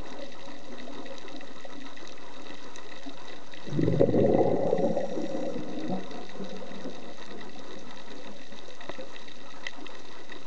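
A scuba diver's regulator exhaling underwater: one gurgling rush of exhaust bubbles about four seconds in, lasting around two seconds, over a steady low hiss.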